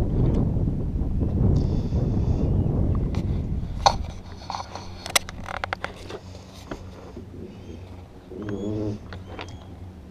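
Wind rushing on the microphone with boat noise for the first four seconds, dropping away suddenly. Then scattered knocks and clicks as a crab trap's rope is handled against the side of a small boat, with a few short bird chirps near the end.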